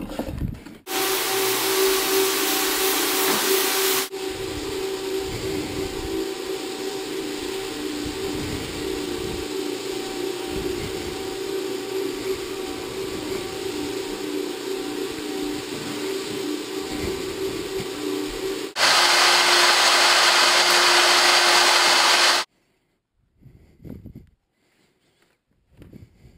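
Rotary floor buffer with maroon abrasive pads running on a hardwood floor: a steady motor hum under a rubbing hiss of pad on wood, louder in some stretches. It cuts off abruptly near the end.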